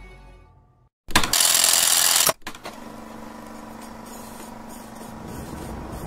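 Ambient intro music fades out to silence. About a second in, a loud burst of static-like noise starts and cuts off abruptly about a second later. It is followed by a steady, quieter mechanical running noise with a faint hum.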